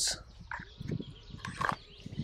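Knife cutting through a length of string against a wooden stump: a few soft scrapes and taps.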